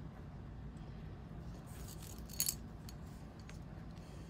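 Faint handling of small nail-art tools against a low room hum, with a brief light clink about halfway through, as a metal-tipped tool picks up and places tiny beads.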